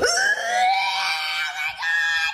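A person screaming: one long, high-pitched scream held at a steady pitch, then a shorter cry near the end.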